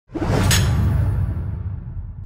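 Logo intro sound effect: a whoosh over a low rumble, with a sharp hit about half a second in, then fading away.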